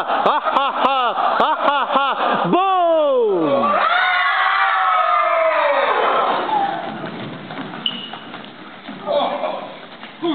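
Unaccompanied chorus of voices singing a rhythmic laugh, "ha ha ha", about three syllables a second, ending about two and a half seconds in with one long falling "haaa". Then comes a high held cry, and scattered voices fade out.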